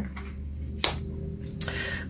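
Two short sharp clicks of tarot cards being handled against the table, the first and louder a little under a second in, the second near the end, over a low steady hum.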